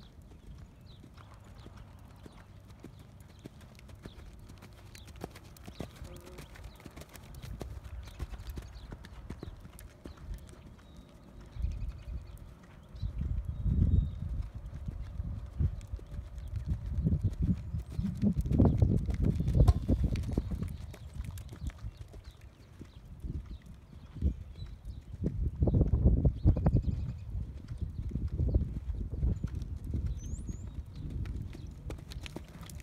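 Hoofbeats of a ridden horse on a dirt arena's footing: a dull, rapid drumming of thuds. The drumming is faint at first and grows loud three times, about a third, two thirds and most of the way in, as the horse passes close by.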